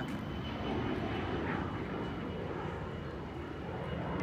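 EMD SD40-2 diesel-electric locomotives idling: a steady low rumble from their two-stroke V16 diesel engines.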